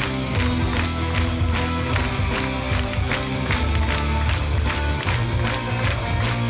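Live band music with a fast, steady beat and sustained bass notes; the audience claps along in time.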